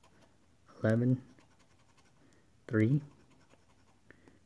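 Faint scraping of a tool across a scratch-off lottery ticket, rubbing off the coating over the number spots. A man's voice calls out two short words, about a second in and near the three-second mark.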